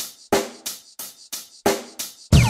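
Background music: a drum-kit intro, with sharp hits about three times a second, each dying away before the next.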